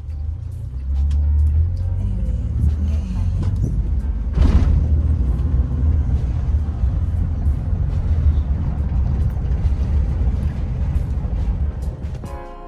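Heavy low rumble of a car in motion heard from inside the cabin, with background music over it. A brief louder burst of noise comes about four and a half seconds in.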